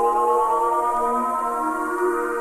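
Ambient electronic music: a synthesizer tone glides slowly upward, like a siren, over sustained pad chords, with no beat.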